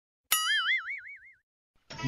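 A cartoon 'boing' sound effect: one springy twang whose pitch wobbles up and down as it fades away over about a second.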